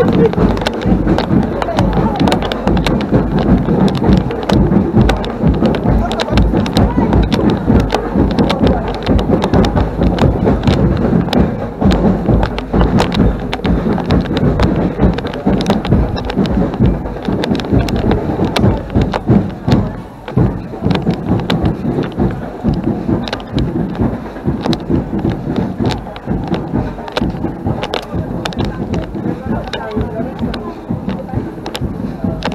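Loud carnival music with voices, booming and distorted in the bass, from a decorated float truck's sound system. It grows fainter over the last third as the float falls behind.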